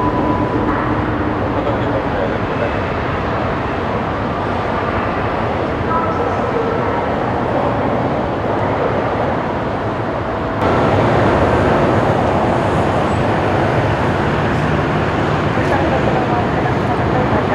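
Steady roar of jet airliner engines at climb power after takeoff. About ten seconds in the sound cuts abruptly to a louder, brighter jet roar, from the four engines of a Boeing 747-8.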